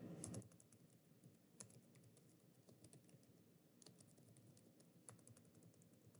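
Faint typing on a computer keyboard: soft key clicks in short runs, thickest about four to five seconds in.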